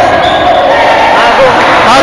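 Men's voices talking over one another in a gymnasium, with a basketball bouncing on the court in the background. The recording is loud and overdriven, with a steady tone under the voices.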